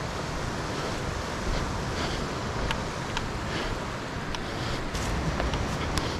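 Steady rushing of a river running over rocky rapids, with some wind on the microphone and a few faint clicks.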